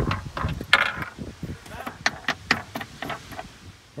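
Plastic push-pin trim fasteners on a car's carpeted trunk liner being unscrewed and pulled out by hand: a string of small, irregular clicks and knocks, the sharpest about a second in.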